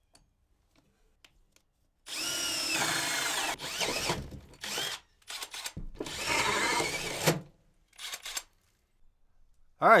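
Cordless drill spinning a hole saw through a wooden wall plate. There are two main runs of cutting, the first starting about two seconds in with the motor's pitch falling as it starts, the second in the middle, with a few short bursts between and after.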